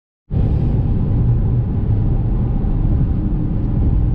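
Steady low rumble of a car driving on a freeway, road and engine noise heard from inside the cabin. It starts suddenly just after the beginning.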